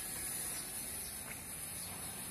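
Quiet, steady outdoor background with a constant high-pitched hiss and no distinct event.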